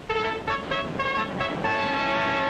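Brass music with a run of short, detached notes, then a longer held note near the end.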